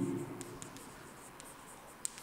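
Chalk writing on a chalkboard: a faint run of short scratches and taps as words are chalked out.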